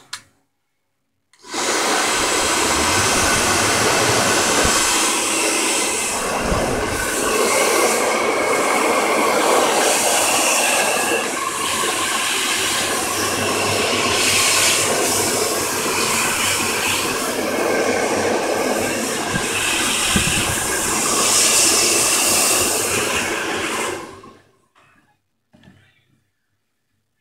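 Handheld hot-air blower running, blowing onto a tablet's battery pack: a steady rushing of air that starts about a second and a half in, swells and dips slightly as the nozzle is moved, and cuts off shortly before the end.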